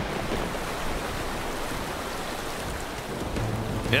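Steady hiss of heavy rain with rushing water, a cartoon storm sound effect.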